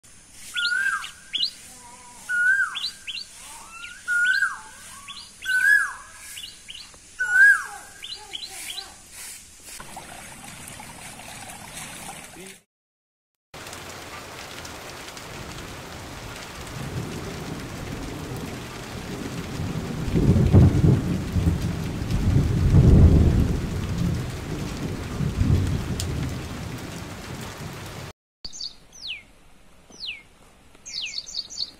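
A bird repeats a short call, five times about every second and a half. After a brief silence comes steady rain, with thunder rumbling twice around the middle. Bird chirps return near the end.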